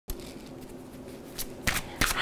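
Tarot cards being shuffled by hand, a faint rustle with a few sharper card clicks about a second and a half in.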